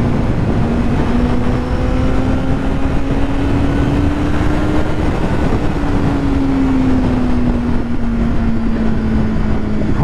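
2005 Yamaha YZF-R6's 600 cc inline-four engine running at a steady freeway cruise in third gear, its pitch rising slightly for about five seconds and then easing back down. Heavy wind rush on the microphone runs under it.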